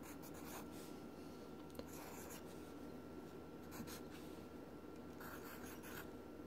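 Pencil writing on lined notebook paper: faint scratching strokes in four short spells, with a faint steady tone underneath.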